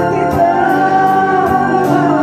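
A man singing into a handheld microphone over karaoke backing music, holding long notes against a steady beat.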